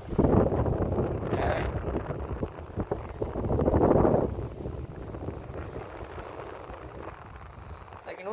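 Vintage Japanese cast-iron pedestal fan running on its highest speed, its airflow buffeting the microphone as a loud rush of wind noise. The gusts are strongest in the first four seconds, then settle to a steadier, quieter rush.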